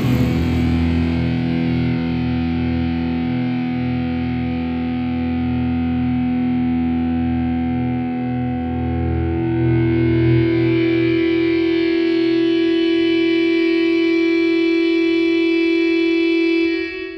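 Symphonic black metal closing on long held, distorted electric-guitar chords. Low notes change underneath for the first ten seconds or so, then a single chord rings out steadily.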